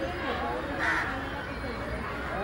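A crow gives a single harsh caw about a second in, over faint background voices.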